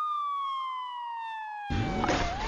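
Emergency vehicle siren, a single wailing tone with overtones, falling slowly and steadily in pitch. Near the end a loud rush of noise cuts in under it.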